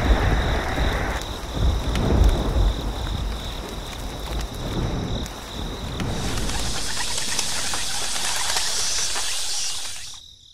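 Rainstorm sound effect: steady rain with deep rolls of thunder in the first few seconds, under a constant high chirring like crickets. The rain turns to a brighter, even hiss about six seconds in, then stops abruptly.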